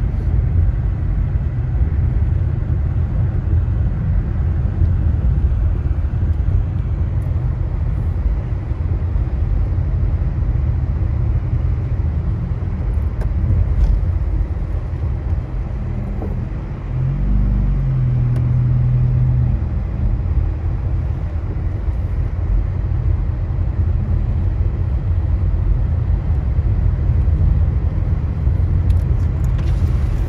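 Steady low rumble of a car driving on a snow-covered road, heard from inside the cabin: engine and tyre noise. About seventeen seconds in, the noise briefly dips and a short low hum comes in.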